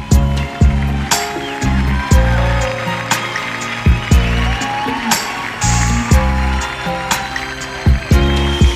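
Instrumental passage of a live pop-band song: an electronic keyboard melody over bass and drum hits, with no singing.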